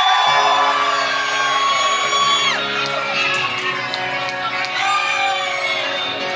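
Live band playing with electric guitars and held chords as a song gets under way, with the crowd whooping and shouting over it.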